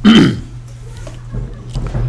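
A man's brief, loud throaty vocal sound right at the start, falling in pitch.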